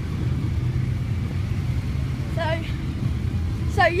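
Low, steady rumble of motorcycle engines idling in a waiting queue. A voice is heard briefly in the middle.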